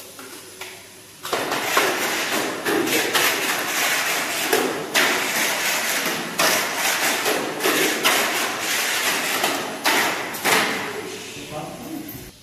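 Tamiya Mini 4WD car on a Super 2 chassis running laps of a plastic track after servicing: a continuous rushing, clattering noise with frequent sharp knocks of the car against the track walls and joints. It starts about a second in and stops about a second before the end.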